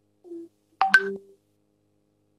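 Brief electronic beep from the video-conference line about a second in: a click with a short, pitched tone lasting about half a second, after a faint short sound just before it.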